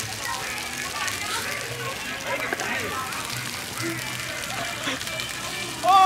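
Splash-fountain jets spraying and splattering on wet paving, a steady hiss of water, with faint voices of people around.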